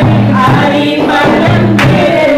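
Three women singing a Christian worship song together into handheld microphones, amplified, over a rhythmic instrumental accompaniment.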